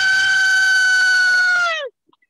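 A person's long, high-pitched falsetto shriek, one note held steady, then sliding down in pitch and cutting off near the end.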